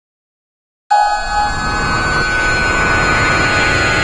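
Silence, then about a second in a loud intro sound effect cuts in suddenly: a dense, steady rumbling noise with high steady tones, the build-up of an animated logo sting.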